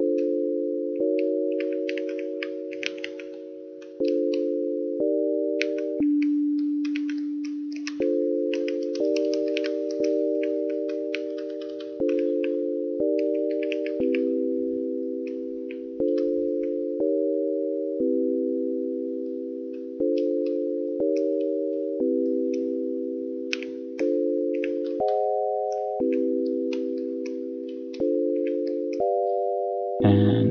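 Dirtywave M8 tracker's FM synth playing a looping progression of four-note chords made of plain sine waves. A chord is struck about every one to two seconds and fades away, and the chord voicing shifts several times as notes are changed. The pure tones have little harmonic content because no feedback has been added yet.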